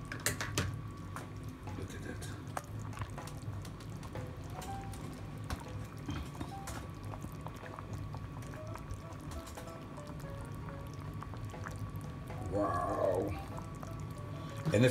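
Pea and chicken soup cooking in an open electric rice cooker pot, making a low, steady bubbling with small scattered pops. A brief voice comes near the end.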